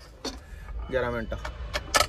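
Low steady rumble inside a truck cab, with a short spoken phrase about a second in and a few sharp clicks near the end.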